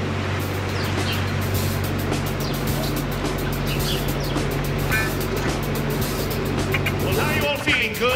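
A boat's engine running steadily with a low hum. It cuts off near the end as music with sliding pitches comes in.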